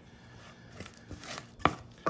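Wooden spoon stirring thick, cooling praline candy in a stainless steel saucepan: faint scrapes and light clicks, then one sharp knock of the spoon against the pan about a second and a half in.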